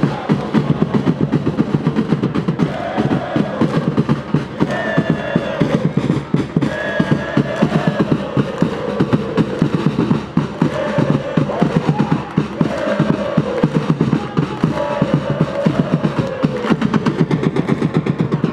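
A stadium crowd of football supporters chanting in unison over fast, steady drumming, in repeated phrases about a second long.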